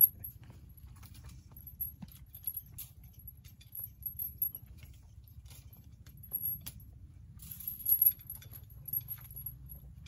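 Scattered metallic clicks and clinks of barbed wire being seated in the pivot joint of a Texas Fence Fixer wire-tightening tool while its lever arm is worked. There is a sharp click right at the start and a cluster of louder clicks about eight seconds in.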